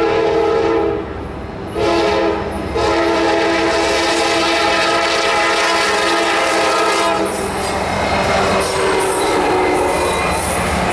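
Locomotive horn of a Norfolk Southern freight's lead EMD SD70M sounding the grade-crossing signal: the tail of a long blast, a short blast about two seconds in, then a final long blast that ends about seven seconds in. The locomotives then pass close by, their engines and wheels on the rails making a loud steady rumble and rattle.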